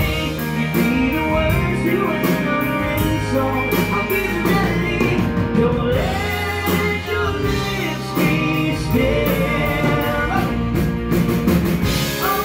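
Live band music: a male lead vocal over drum kit and guitar.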